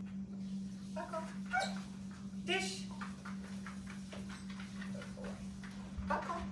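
A dog giving two short whines, about a second and two and a half seconds in, the second one louder.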